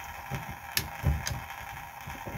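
Light handling noise and two short, sharp clicks around the middle from a Leatherman multitool being worked in the hands, typical of its folding screwdriver being opened.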